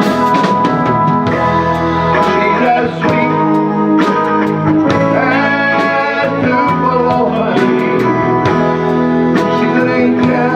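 Live band music: electric guitar over bass and drums, with a man singing into a microphone.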